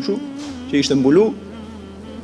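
A man's voice drawing out a sound, with a steady low hum beneath it from about half a second in.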